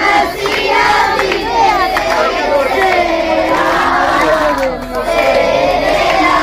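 A group of children and adults singing a Christmas worship song together, many voices at once, loud and steady.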